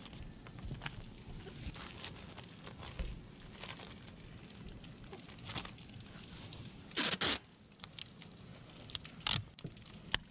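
Flashing tape and house wrap being handled around an exterior electrical box: light crackling and rustling as the tape is pressed and peeled, with sharp tearing rips about seven seconds in and again near the end.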